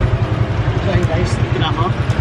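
A tricycle's Honda motorcycle engine running under way, heard from inside the sidecar as a rapid, even low throb. A voice comes in briefly near the end.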